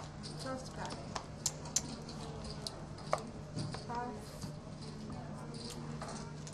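Scattered sharp clicks of poker chips being handled and put down on the table, over a steady low hum and faint talk.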